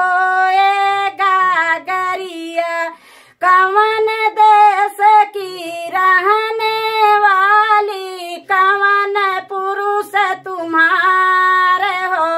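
A woman singing a North Indian devotional folk song solo, without accompaniment, in long held notes that waver slightly. There is a short break for breath about three seconds in.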